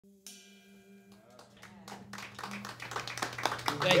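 Audience applause that builds and grows louder over a few seconds, after a faint held tone at the start; a man begins saying "thank you" at the very end.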